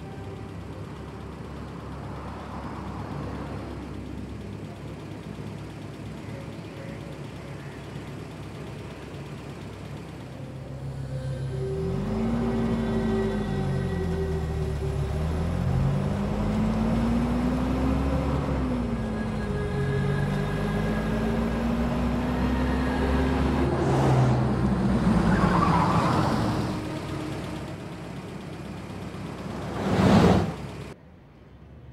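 A motor vehicle engine running, louder from about twelve seconds in, its pitch climbing and falling several times as it revs up and eases off.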